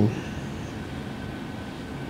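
A pause in conversation filled only by steady background room noise: an even low hum and hiss with a faint thin steady tone.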